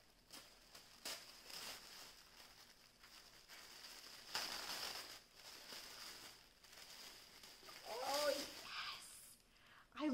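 Wrapping paper rustling and crinkling as a wrapped gift is opened, in a series of soft bursts, the loudest about four to five seconds in. A brief murmured voice comes near the end.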